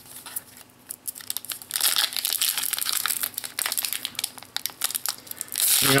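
Foil trading-card booster pack wrapper crinkling in the hands and being torn open. A few faint crackles at first, then a dense, continuous crinkle from about two seconds in until just before the end.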